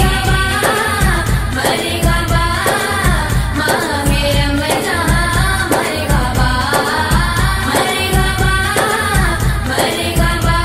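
A naat, a devotional song, sung by a solo voice in long bending lines over a steady low beat.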